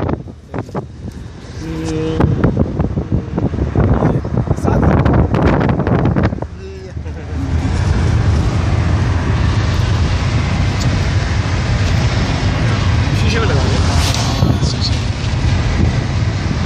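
Car interior while driving: gusty wind buffeting the microphone and the handling noise of the phone, settling about seven seconds in into a steady low rumble of road and engine noise.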